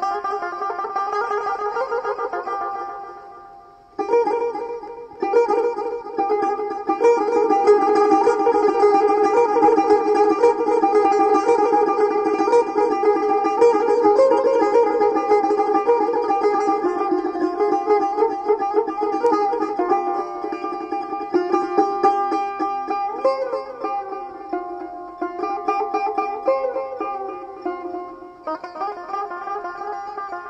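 Persian tar played solo in the Dashti mode: quick plucked melodic runs. The playing pauses briefly about four seconds in, then goes on in dense, busy phrases.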